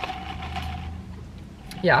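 Steady low hum of a car's engine idling, heard inside the cabin.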